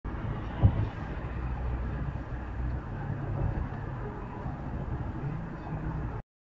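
Steady low road and engine rumble inside a car cruising on a motorway at about 90 km/h, with a single sharp thump a little over half a second in.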